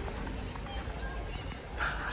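Footsteps on snow during a walk, under a steady low rumble; a man starts laughing near the end.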